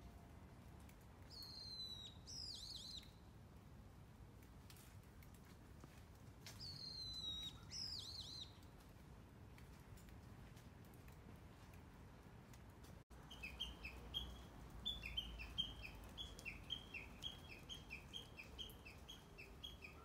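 Faint birdsong. Two short songs come a few seconds apart, each a falling whistle followed by quick looping notes. Later comes a long run of short chirps alternating between two pitches, about three a second.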